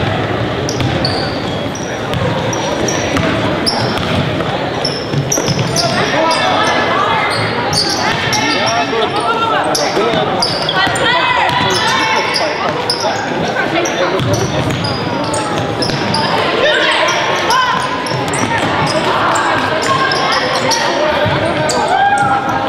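Live basketball game sound in a gymnasium: a basketball dribbled on the hardwood floor, short high sneaker squeaks, and players and spectators calling out and chattering, with the echo of a large hall.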